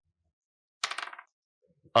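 Dice clattering briefly on a table about a second in, a rapid run of small hard clicks as a die is rolled for an attack.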